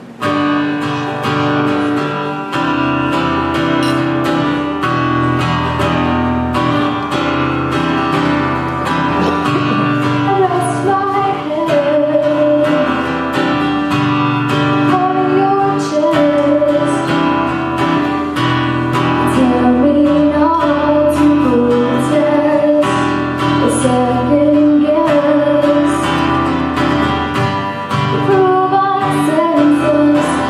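Acoustic guitar strummed in a steady rhythm, joined by a woman singing from about ten seconds in.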